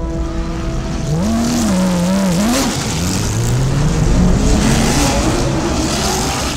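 Porsche 911 GT3 R Hybrid racing engine revving hard, its pitch rising and falling with throttle and gear changes, then climbing steadily about halfway through as the car accelerates.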